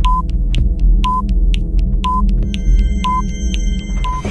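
Broadcast countdown sound effect: a short electronic beep once a second, with quicker ticks between the beeps, over a low throbbing drone. Near the end, extra electronic bleeps join in.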